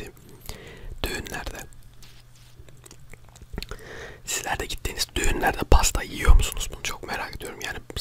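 Close-miked eating sounds of a forkful of soft biscuit cake. After a quieter stretch, wet chewing and mouth sounds start about halfway through, with two low thumps a little later.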